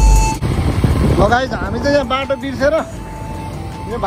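A voice singing a wavering melody over steady road traffic and motorcycle riding noise. A louder music passage breaks off in the first half second.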